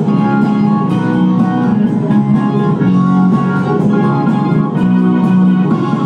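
Live rock band playing an instrumental passage with no singing: electric guitars and held chords over drums.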